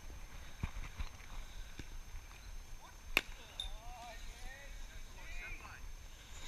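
A single sharp crack about three seconds in, a cricket bat striking the ball in the practice nets, over faint distant voices and low wind rumble.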